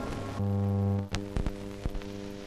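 Steady electrical hum on an old newsreel film soundtrack, louder for about half a second and then fainter, with a few sharp clicks in the second half: the pops of a film splice between two reels. The last of a music fade-out is heard at the very start.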